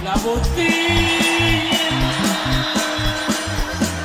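Instrumental passage of norteño music with no singing: an accordion holds one long note over a regular, alternating bass line.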